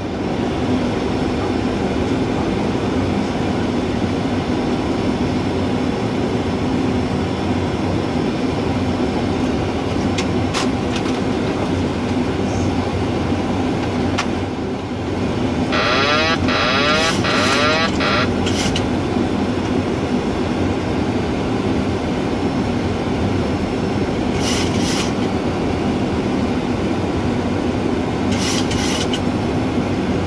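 Steady rush of airflow and engine noise in a Boeing 737 cockpit on final approach. A brief patterned sound comes about 16 seconds in, and short hissy bursts come later.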